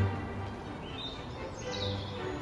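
Small birds chirping, two short high chirps about a second in and near the end, over quiet sustained background music.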